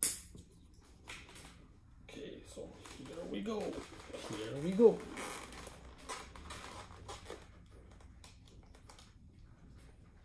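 A Scorpion Exo-510 Air full-face motorcycle helmet being handled and pulled on over eyeglasses: a sharp click at the start, then rubbing and small knocks of the shell and padding. In the middle, a muffled voice with gliding pitch sounds for a few seconds.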